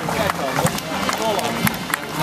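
Spectators clapping along a parade route: many irregular, overlapping hand claps over the chatter of crowd voices.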